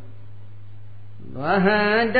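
A steady low electrical hum under a pause. About one and a half seconds in, a monk's voice begins a chanted recitation of Pali text, with long, evenly held tones.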